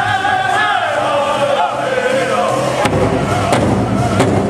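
Powwow drum group singing a Grand Entry song: high voices carry a long phrase that slides downward, over the big drum. The drum strokes are sparse at first and come back strongly about three seconds in.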